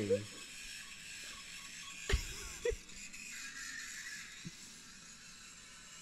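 Faint concert audio, music and crowd noise, playing from a phone video, with two short knocks a little after two seconds in.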